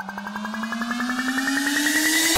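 Electronic dance music build-up from an FL Studio remix: several synth tones glide steadily upward in pitch over a fast, even pulsing roll, while a hiss sweeps upward and the whole sound grows louder, leading into the drop.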